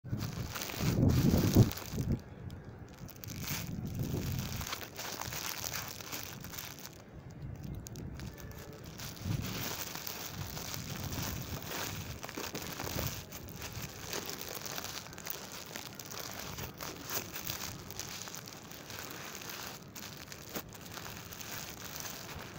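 Car tyre pressing down on and rolling over a flat-screen display, its plastic frame and screen cracking with a run of crackles and crunches. A loud low rumble comes about a second in.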